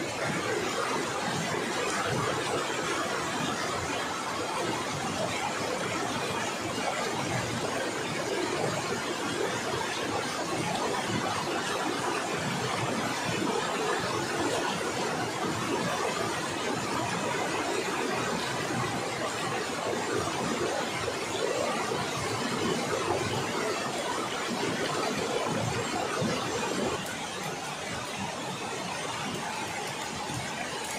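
Steady rush of a fast-flowing river, an even noise without pause that drops a little in level near the end.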